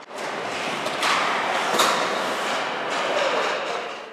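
Ice hockey skates scraping and carving on rink ice, heard as a steady hiss that swells after about a second, with one sharp knock a little under two seconds in.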